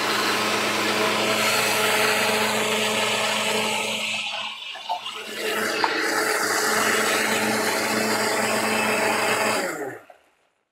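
Countertop blender running at speed, puréeing soaked mung dal into a thick batter. The motor dips briefly about halfway, runs again, and stops at the very end.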